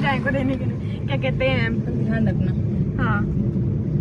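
Steady low road and engine rumble inside the cabin of a moving car, with brief bits of talk over it.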